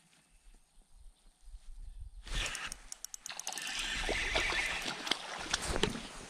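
Almost quiet at first, then a little over two seconds in a hooked crappie starts splashing at the water's surface, mixed with many sharp clicks, as it is reeled in on a spinning reel and lifted from the water.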